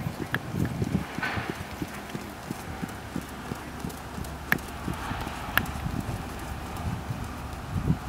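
A ridden horse's hooves thudding dully on sand arena footing at a trot, a steady run of soft hoofbeats, with two sharp clicks around the middle.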